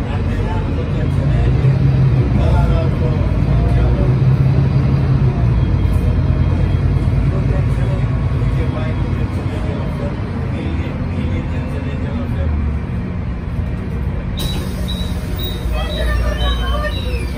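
Inside an Otokar Kent C18 articulated diesel bus under way: a steady low engine and drivetrain drone with road noise. It pulls harder for the first several seconds, then eases. Near the end the sound changes abruptly at a recording cut.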